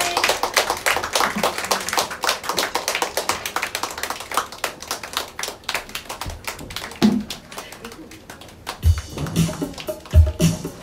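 A small audience clapping, the applause thinning out after about six seconds. Near the end, music with a deep, regular beat starts.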